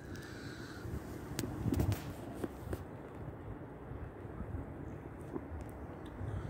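Quiet open-air ambience: a low rumble like wind on the microphone, a few faint clicks, and a bird calling, briefly louder a little before two seconds in.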